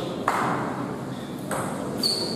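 Table tennis ball knocking: two sharp taps about a second and a quarter apart, over a steady background murmur.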